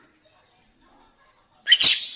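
Peach-faced lovebird giving a short, sharp sneeze-like 'achoo' near the end, a mimicked human sneeze.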